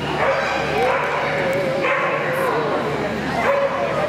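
A dog whining and yipping in one long, wavering high-pitched cry lasting about three seconds, broken briefly near the middle.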